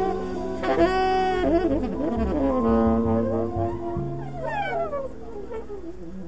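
Live jazz: tenor saxophone playing long held notes and sliding phrases over upright bass, growing quieter near the end.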